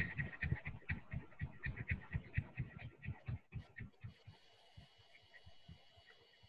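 Fingertips tapping rapidly on the bone beside the eyes, about five light taps a second, fading out about four seconds in.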